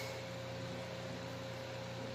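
Steady room tone: a low electrical-sounding hum with a faint steady higher tone over even hiss, unchanged throughout, with no distinct event.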